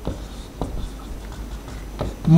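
Marker writing on a whiteboard: a run of short strokes scratching across the board, with a light tap about half a second in.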